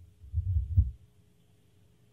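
A few low, muffled thumps in the first second, with almost nothing above the bass.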